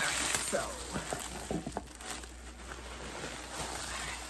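Plastic bubble wrap rustling and crinkling as it is pulled off a wrapped item, loudest in the first second and then softer.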